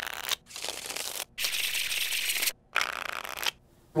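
A deck of playing cards being shuffled, in four riffling runs of about a second each with short breaks between.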